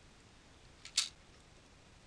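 A single computer mouse click about a second in, over faint room hiss.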